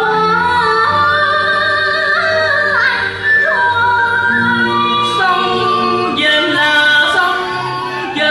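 Cải lương (Vietnamese reformed opera) singing with instrumental accompaniment: a voice holds long notes and slides between pitches over steady backing.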